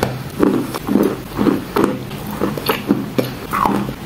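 Close-miked biting and chewing of wet chalk: a string of short crunches and wet mouth sounds, about three a second.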